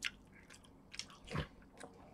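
A person chewing and eating food taken with chopsticks from a plastic container, with a few short sharp clicks and one brief louder mouth sound a little after halfway.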